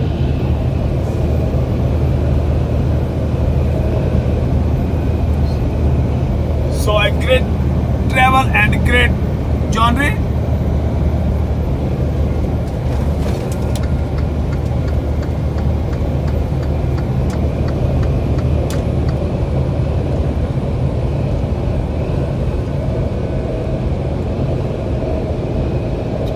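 Steady low engine drone and tyre noise inside the cab of a tractor-trailer cruising at highway speed.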